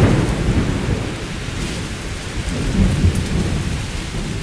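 Steady rain with rolling thunder, loudest right at the start and swelling again about three seconds in.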